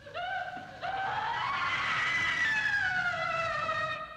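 Eerie logo-sting sound effect: a single wailing tone with overtones that enters just after the start, steps up about a second in, rises slowly in pitch and then slides back down, fading out at the end.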